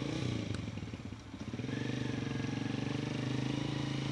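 An engine running nearby, settling into a steady, even note about a second and a half in.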